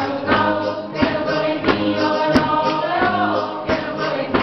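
A small choir singing a song together, with a steady beat about every two-thirds of a second behind the voices.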